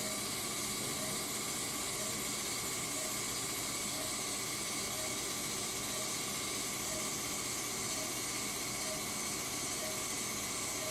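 Steady hiss of the Aquablation system's high-pressure saline waterjet running at treatment power, about 85%, during prostate resection. Faint short beeps come a little more than once a second.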